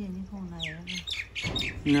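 Birds calling in the background: short, high squawks and chirps, with one falling call a little under a second in.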